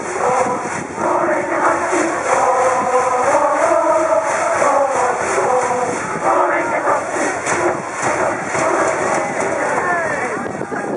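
High school baseball cheering section: a brass band playing a cheer song while the massed students sing and shout along, over a steady beat.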